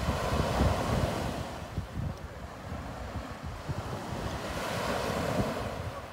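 Sea surf washing onto the shore: a steady rush of breaking waves that swells about a second in and again near the end.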